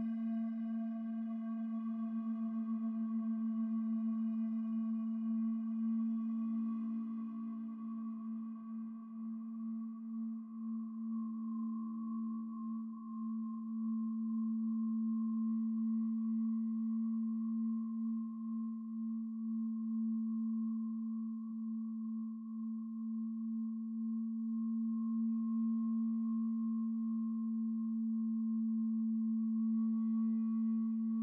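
Feedback drone from the Empress Zoia Euroburo's Feedbacker patch: a reverb fed back into itself through a chain of bell filters, ring modulation and a compressor. It holds one steady low pitch with a fainter ringing tone above it and swells gently in level; its higher overtones die away about eight seconds in and come back near the end.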